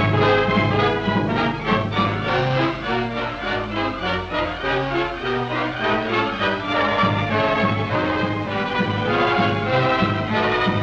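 Orchestral film music, many instruments sounding held notes together that change every second or so.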